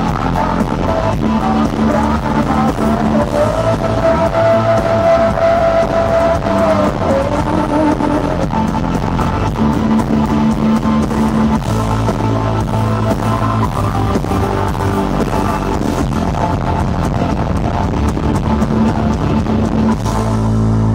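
Live rock band playing loudly: electric guitars, bass and a drum kit, with a long held note a few seconds in.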